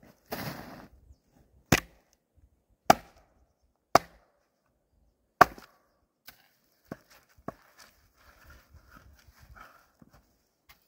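Axe strikes splitting frozen birch rounds: four sharp, loud cracks about a second apart, the dry frozen wood splitting cleanly. These are followed by several lighter knocks.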